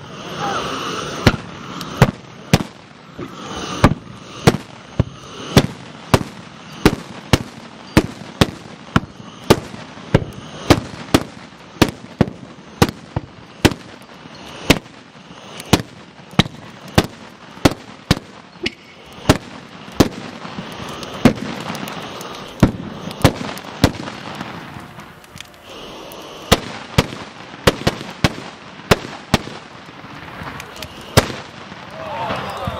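Carbide cannons firing one after another in a rapid series of sharp bangs, about one or two a second. These are milk churns charged with calcium carbide and water, their acetylene gas ignited with a lance so that each blast shoots a ball off the churn's mouth. The loudest bang comes right at the start.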